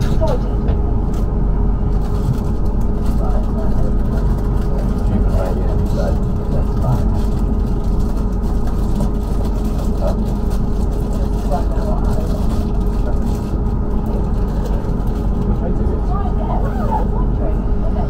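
Interior of a Class 444 Desiro electric multiple unit running along the line: a steady low rumble of wheels on rail, with a steady hum from the train's traction equipment.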